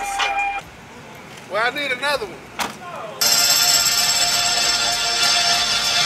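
A quiet stretch with a few short bits of voice, then loud music starts abruptly about three seconds in and plays on steadily.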